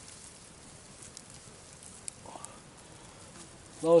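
Wood campfire crackling faintly, with a few scattered sharp pops.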